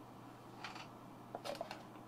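Faint handling noise of a paper pamphlet and a cardboard lens box: two short rustles, about half a second in and about a second and a half in.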